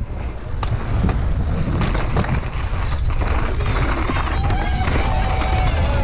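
Wind buffeting an on-board camera microphone and the rattle of a downhill mountain bike running fast over a wooden boardwalk and then a dirt track. Spectators shout from about four seconds in.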